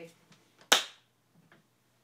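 A single sharp hand clap about two-thirds of a second in, rung out briefly by the room: a slate clap marking the take so sound and picture can be synced.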